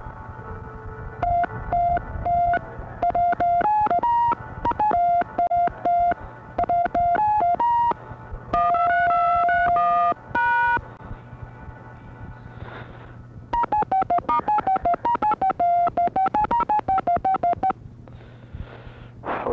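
Touch-tone telephone keypad beeps pressed one after another to pick out a tune, heard down a phone line on an answering-machine tape, with a low steady hum underneath. The beeps come in short staccato runs with one longer held tone, a pause of about two seconds, then a fast run of beeps near the end.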